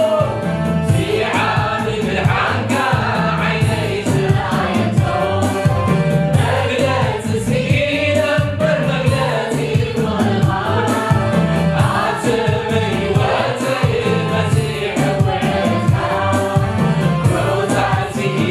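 Tigrinya-language gospel worship song: a male lead singer and a small mixed choir singing together into microphones over backing music with a steady beat.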